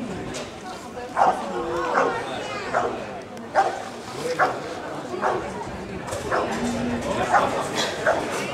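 Rottweiler barking at a protection helper, one sharp bark roughly every second from about a second in.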